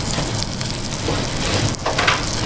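Butter sizzling in a hot nonstick frying pan, a steady crackling hiss, with a few light scrapes of a plastic spatula against the pan.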